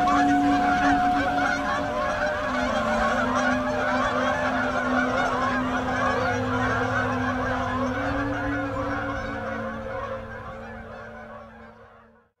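A large flock of Canada geese honking together in a dense, overlapping chorus as they fly off, fading out over the last couple of seconds.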